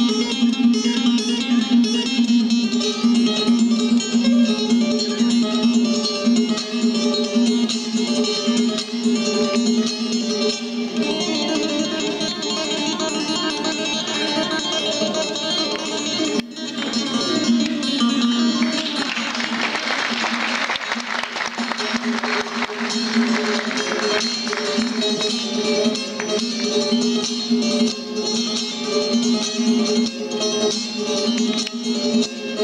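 Solo bağlama played live: fast plucked melody over a steady ringing drone note. About twenty seconds in, a denser, hissier stretch lasts several seconds before the drone comes back to the fore.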